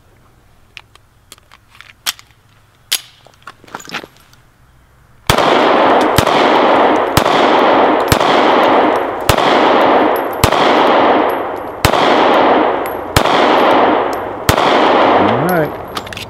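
Springfield EMP 1911-style 9mm pistol fired nine times at a steady pace, about one shot every second, starting about five seconds in. Each shot is followed by a long fading echo. Before the first shot there are only a few light clicks.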